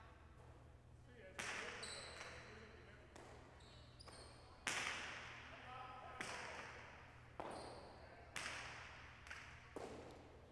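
A jai alai pelota is served and rallied. It cracks sharply against the walls and floor about eight times, roughly once every second or so, each crack ringing on in a long echo.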